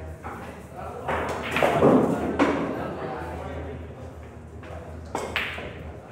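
Pool balls clicking against each other on a billiard table a few times, the sharpest click a little after five seconds, amid people talking in a large, echoing hall.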